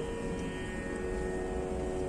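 A steady drone of several held pitches over a low rumble of room noise, in a pause between words.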